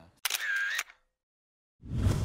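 A single camera shutter sound, one click-and-wind lasting about half a second, starting about a quarter second in: a picture being taken.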